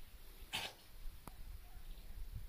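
A dog sneezes once, a short sharp burst about half a second in, over a steady low rumble.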